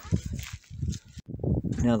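A man's voice speaking in short bursts, with pauses; no machine is heard running.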